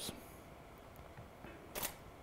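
A DSLR camera's shutter firing once near the end, a single short click over quiet room tone.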